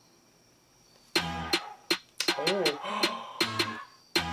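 About a second of near silence, then the teaser's pop track starts: crisp beat hits with a short rising-and-falling tone in the middle, played back through the reactor's room audio.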